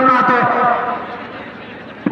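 A man's commentary voice at the start, then a low crowd murmur that fades off.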